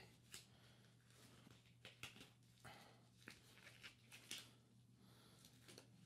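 Near silence with a few faint rustles and small snaps of a disposable glove being pulled onto a hand, over a low steady hum.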